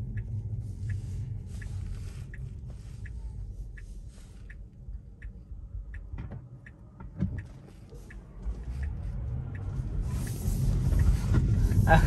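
Car turn-signal indicator ticking steadily inside the cabin, about three ticks every two seconds, over a low cabin rumble, stopping after about nine seconds. About ten seconds in, road noise swells as the car pulls away and speeds up.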